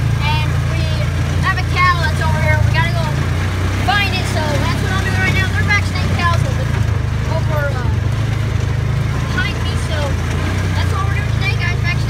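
Engine of a Polaris off-road vehicle running steadily while driving over a field, with indistinct voice sounds over it.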